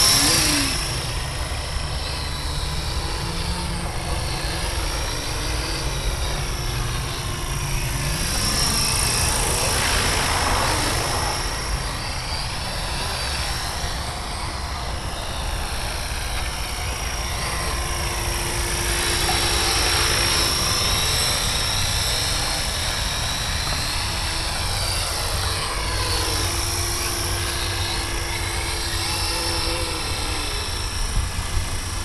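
Ikarus Eco 7 electric RC helicopter flying circuits: a steady high whine from the motor and gears over the swish of the rotor. It swells and bends in pitch as the model passes by, about ten seconds in and again around twenty seconds.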